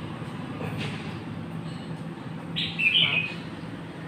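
A bird chirps once briefly about three seconds in, over a steady low hum.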